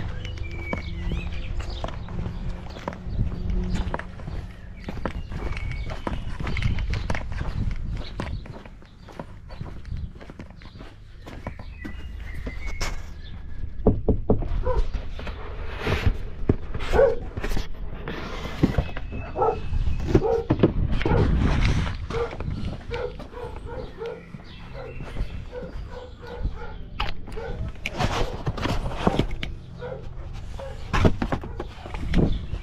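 Footsteps and knocks of parcel handling on a walk to a front door, then a dog barking repeatedly through the second half.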